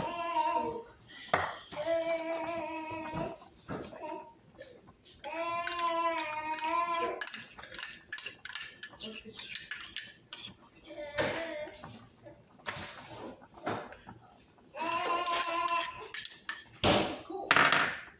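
A metal spoon clinking and scraping against a bowl and a loaf pan as ketchup glaze is spooned onto meatloaf, with a run of quick clinks in the middle and a loud knock near the end. A teething baby cries in bouts in the background.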